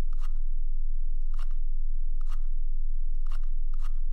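Computer mouse scroll wheel turned in five short bursts of clicking, each a quick run of notches, over a steady low hum.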